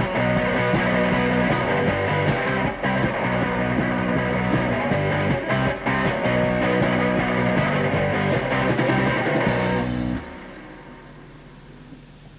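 Punk band playing live on a 1980s cassette demo, with electric guitar, bass and drums. The song stops abruptly about ten seconds in, leaving low tape hiss.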